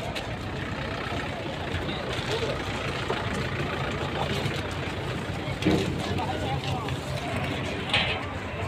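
Indistinct voices of people talking over a steady low engine hum from a large vehicle, with one brief louder sound a little before six seconds in.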